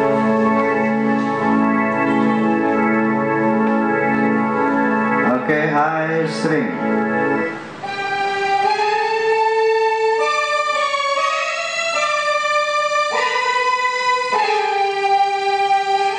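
Stage keyboard being sound-checked: a chord played in an even repeated pulse about twice a second, then, after a short break, a slow melody of long held notes from about eight seconds in.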